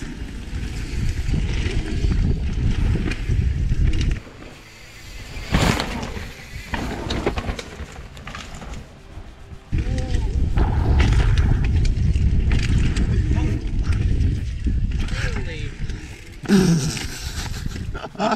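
Mountain-bike riding noise on a camera microphone: wind rushing and tyre and trail rumble in two long stretches, with a sharp knock about six seconds in and a brief shout near the end.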